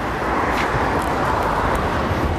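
Street traffic: a steady rush of passing vehicles, fairly loud.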